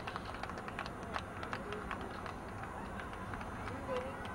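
Outdoor ambience at a soccer field: distant voices under a steady low noise, with many scattered sharp clicks.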